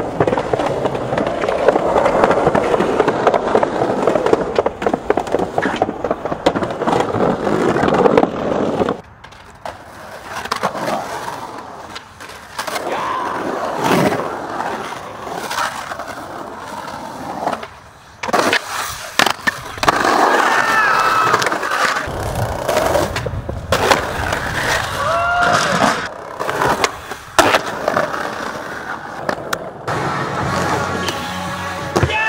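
Skateboard wheels rolling over rough concrete. After about nine seconds a cut brings separate takes of sharp board pops, slaps and landings, with rolling between them.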